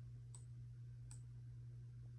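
Two computer mouse clicks, under a second apart, over a low steady hum.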